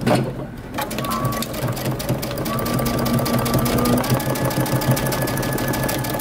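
Domestic electric sewing machine running at a steady speed, its needle stitching rapidly through folded shirt-collar fabric along a new seam line.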